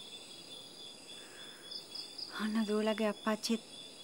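Crickets chirring steadily in the background, a thin high-pitched pulsing trill that runs unbroken under the scene.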